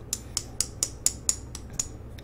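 Fingers snapping repeatedly, about eight crisp snaps at a steady pace of roughly four a second.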